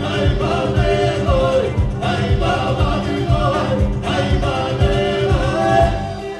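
Georgian folk ensemble singing in several-part harmony over instrumental accompaniment, with a steady low beat running under the voices.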